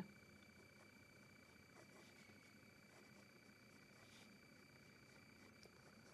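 Near silence: room tone with a faint, steady high-pitched hum.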